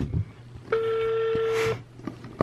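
Ringback tone from an iPhone on speakerphone while a call is placed: one steady beep about a second long, the sign that the called phone is ringing. A short knock comes just before it, at the start.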